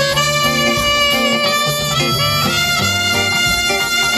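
Live band music: an alto saxophone and a trumpet playing a melody together over band accompaniment with a stepping bass line.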